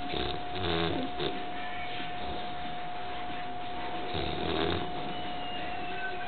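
Five-month-old boxer puppy snoring in its sleep: two long snores, one right at the start and another about four seconds in.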